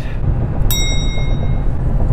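Steady low road and engine rumble inside a car at freeway speed. A single bell-like ding sounds a little under a second in and rings out for about a second.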